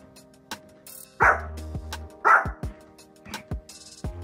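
A small dog barks twice, about a second apart, over background music with a steady beat.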